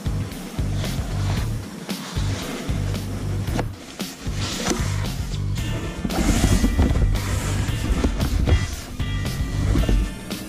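Background music with a deep bass line and a steady beat.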